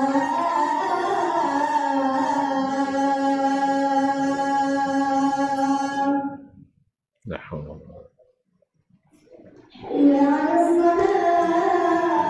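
A single voice sings long, drawn-out melodic notes that shift slowly in pitch. It breaks off a little past halfway for a pause of about three seconds, with one brief short sound in the gap, then starts a new held phrase near the end.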